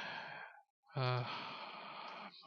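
A man breathing out audibly twice into a close microphone, in a hesitation between words. The two breathy sighs are split by a short silent gap, and the second opens with a brief voiced hum.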